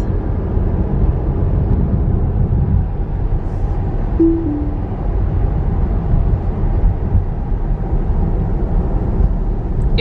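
Steady low road and tyre rumble inside a moving Tesla's cabin, with no engine note. About four seconds in, a short two-note falling tone sounds.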